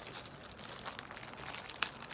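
Clear plastic bag crinkling as it is pulled open by hand, with a couple of sharp crackles, one about halfway and one near the end.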